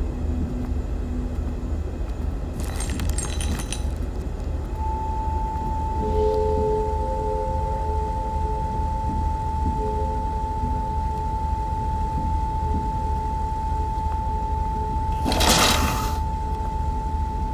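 Steady low electrical hum of a room full of broadcast equipment, with a brief cluster of clicks and clinks about three seconds in. About five seconds in, a single steady electronic tone starts and holds, joined by fainter lower tones that come and go. A loud burst of noise swells just before the end and is the loudest sound.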